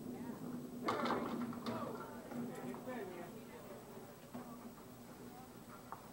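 Candlepins clattering as the bowling ball strikes them about a second in, under a shouted "yeah" and voices. After that only a steady low background hum remains.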